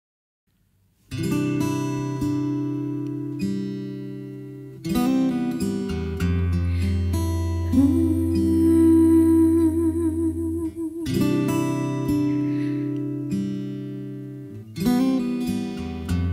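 Acoustic guitar playing a slow song intro: chords struck roughly every four seconds and left to ring, starting about a second in after silence, with a deep low note held through the middle.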